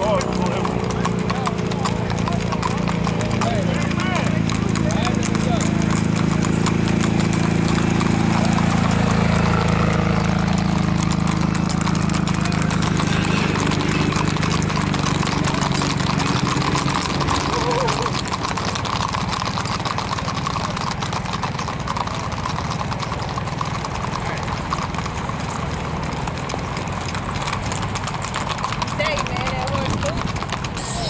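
Hooves of gaited horses clip-clopping on an asphalt road, a steady run of hoofbeats, with people talking in the background. A vehicle engine hums under it for the first half or so, fading out.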